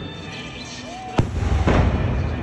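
A firework bursts with a sharp bang a little over a second in, followed by a loud low rumble, over the laser show's music.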